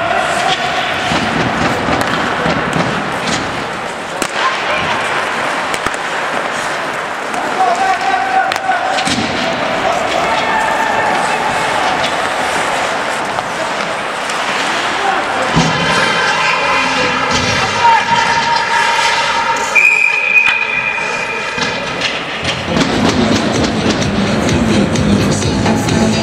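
Ice hockey game sounds in an indoor rink: skates on the ice, sharp clacks of sticks and puck against the boards, and players shouting. Music over the rink's speakers comes in during the second half.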